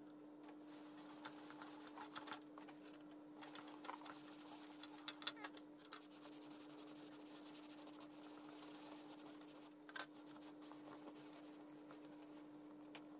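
Faint scratchy brushing of a small round brush working saddle soap into smooth leather, in short uneven strokes mostly in the first half, with a sharper tick about ten seconds in. A steady low hum runs beneath.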